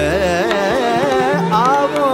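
Indian classical devotional music in Raag Malkauns: a male voice singing a fast, ornamented run without words over held harmonium notes. A low steady tone drops out about half a second in.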